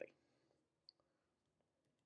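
Near silence, with a single short faint click about a second in. The last word of speech tails off at the very start.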